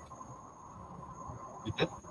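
Faint steady high-pitched tone over low background hiss, with a short, sharp sound near the end.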